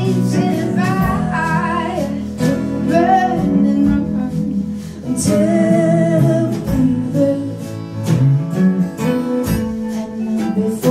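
Live acoustic band: a woman singing over strummed acoustic guitars, with drum hits marking the beat.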